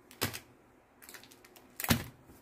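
Foil-wrapped trading card packs being set down on a cloth playmat: a sharp tap shortly after the start, a few light crinkling ticks, and a louder tap near the end.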